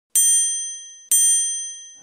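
The same bright, high-pitched chime sounds twice, about a second apart, and each ding rings on and fades away. It is the sound of a TV channel's animated logo ident opening.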